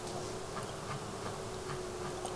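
Faint, irregular clicks of computer use, about two or three a second, over a steady low hum.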